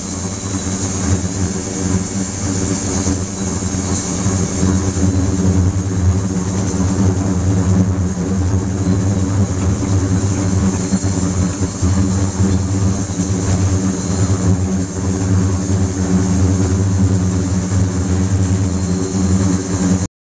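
Ultrasonic cleaning tank running with its water churning: a steady, unbroken hum made of several even low tones, under a constant high hiss from the agitated water.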